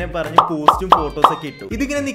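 Four sharp pops in quick succession, about a third of a second apart, over a voice and faint music.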